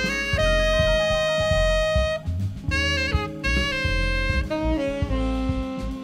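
Tenor saxophone playing a jazz melody live, with one long held note lasting nearly two seconds, then shorter phrases. The band's drums and bass play underneath.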